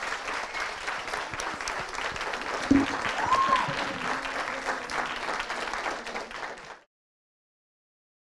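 Audience applause in a large hall: many people clapping steadily, with one louder thump about three seconds in. The applause cuts off suddenly about seven seconds in.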